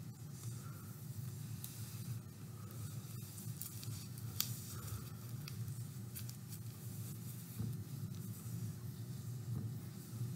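Faint rustling and light scattered ticks of hands pulling thread through the loops of a dream catcher web, over a steady low hum.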